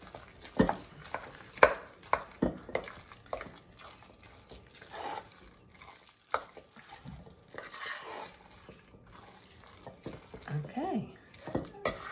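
A spoon stirring thick ham salad in a stainless steel mixing bowl. The mixing scrapes and rustles, and the spoon clinks against the bowl's side now and then.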